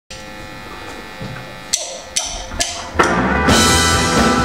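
Live rock band with drum kit, electric guitars and bass: a held chord rings steadily, then four loud hits roughly half a second apart lead into the whole band playing at full volume about three seconds in.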